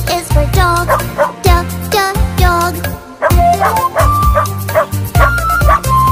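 Upbeat children's song music with a steady bass beat, with a cartoon dog sound effect barking several times over it in the first half, followed by melody notes.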